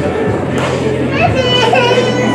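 Background music with a steady bass line under crowd chatter and children's voices.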